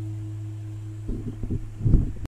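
The final chord of an acoustic guitar ringing out and dying away, over a steady low hum. About a second in, a few irregular dull knocks and rustles of handling take over, loudest near the end.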